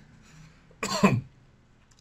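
A man clearing his throat once, a short burst about a second in.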